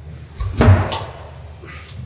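A dull thump with a short clatter about half a second in, as a metal scooter exhaust is lifted and handled.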